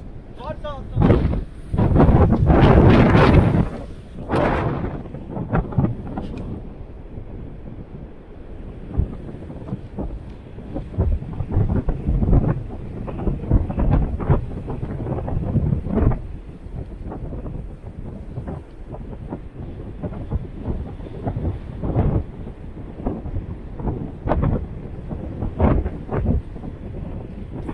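Strong wind buffeting the microphone over the rumble of surf breaking on the rocks, with a loud gust lasting a few seconds about a second in. Frequent short knocks are scattered through the rest.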